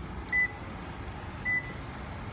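Two short, high electronic beeps about a second apart, over a steady background hiss.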